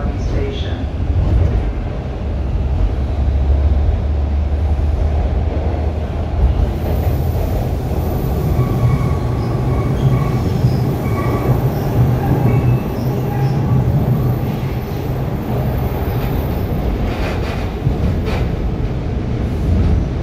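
TTC T1 subway car running through a tunnel, heard from inside the car, with a steady rumble of wheels on track. Its low motor hum steps up in pitch about seven seconds in as the train gathers speed.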